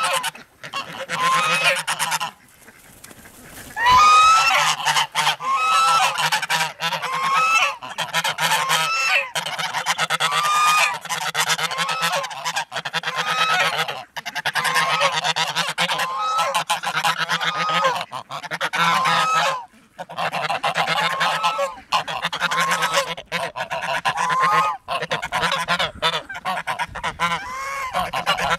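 Domestic geese honking repeatedly, call after call with only brief pauses, in an aggressive squabble with necks stretched low at one another.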